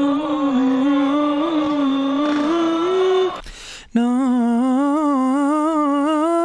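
A man's voice singing a slow, ornamented run: two long held notes, each wavering up and down in pitch a few times a second and stepping up at the end. The second note starts after a short break.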